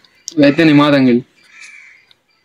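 An elderly woman's voice: one short utterance of under a second, followed by a faint brief sound near the end.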